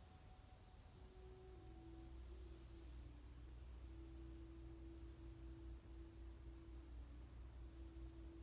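Near silence: a low steady room hum with a faint, thin held tone that comes in about a second in and dips slightly in pitch soon after.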